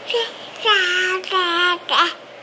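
A baby vocalizing: two long, drawn-out high-pitched cries of 'aah' in the middle, with a short one just before and another at the end.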